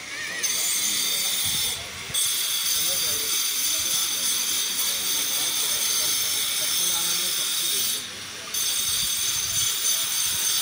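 A loud, steady high-pitched hiss with a buzzing, many-toned edge that cuts out abruptly twice, about two seconds in and again about eight seconds in. Faint murmuring sound runs beneath it.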